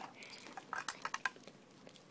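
A few faint light clicks and knocks of small plastic craft supplies being handled, mostly in the first half, then quieter.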